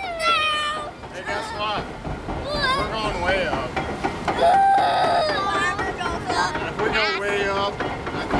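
Excited children chattering, squealing and laughing in high voices, over a steady low rumble from the raft ride.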